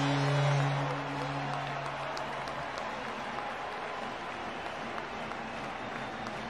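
Arena crowd cheering and applauding a home goal in an ice hockey game. A low held tone fades out about two and a half seconds in, leaving the crowd noise alone.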